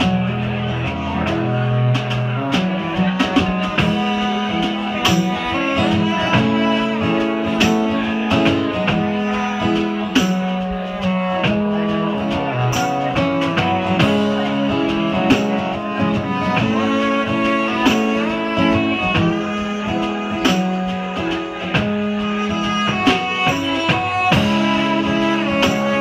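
A live acoustic trio playing: a strummed acoustic guitar and a bowed cello over a drum kit, with regular drum and cymbal strokes throughout.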